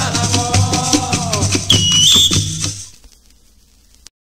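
Bumba-meu-boi music in sotaque de matraca: a held sung note slides down over clattering wooden matracas and deep drums. About two seconds in, a whistle blows two notes, stepping up. The music then stops and dies away to a faint tail.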